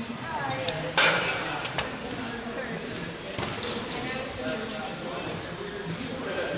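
Gym weights clanking: one sharp metallic clank about a second in, followed by a few lighter clinks.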